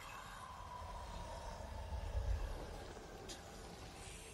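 Film soundtrack: a whispered voice drawing out "Come... to me" over a low rumble that grows louder about two seconds in, then eases.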